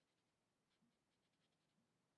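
Near silence, with faint light scratches of a paintbrush dabbing on watercolor paper about a second in.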